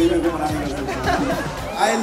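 A man speaking into a microphone over amplified background music; the music's low bass drops out near the end.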